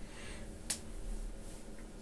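A single short, sharp click about two-thirds of a second in, over a faint steady low hum.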